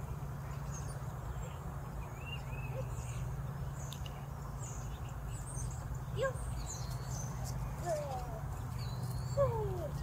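Outdoor ambience: a steady low hum with birds chirping high in the background, and a few short sliding calls in the second half.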